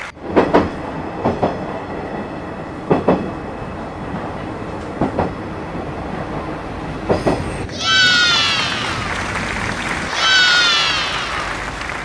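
Regional passenger train rolling past: its wheels click over rail joints, often in close pairs, then give two high squeals falling in pitch, near the end.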